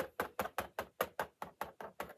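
Plastic stylus of a magnetic drawing board tapping rapidly on the board's screen in quick strokes, about five sharp taps a second, evenly spaced.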